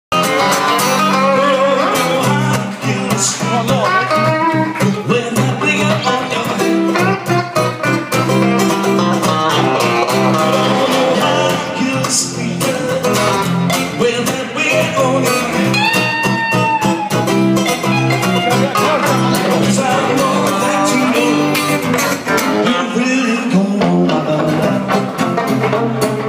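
Live, amplified guitar duo: a Stratocaster-style electric guitar and a strummed acoustic-electric guitar playing together, loud and continuous.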